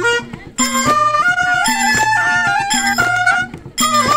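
Several clarinets playing a traditional folk tune together over a steady low beat, the melody stepping up and down, with short breaks in the tune about half a second in and again near the end.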